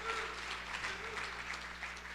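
Audience applauding, with a few scattered voices in the room.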